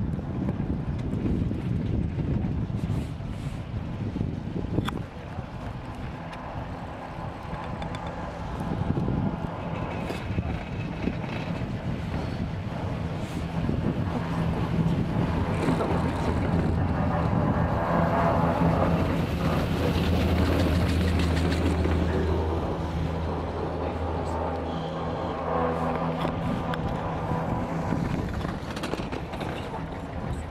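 Chairlift ride: wind buffeting the microphone over a steady low hum from the moving lift, which grows stronger in the second half.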